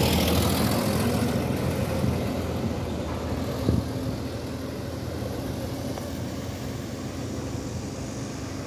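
Hyundai Universe Space CNG coach pulling away and driving off, its engine and road noise fading steadily as it recedes. A brief knock sounds about three and a half seconds in.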